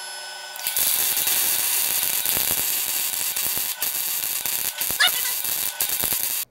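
Steady hum, then about half a second in a MIG welding arc strikes and crackles steadily as a wire-fed spool-gun torch on a converted Ender-3 3D printer gantry lays weld beads on steel plate. The arc drops out briefly a few times near the end.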